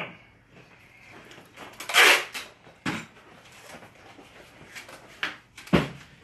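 Objects being rummaged through and handled on a work table: a few scattered knocks and thuds, with a brief louder rustle about two seconds in.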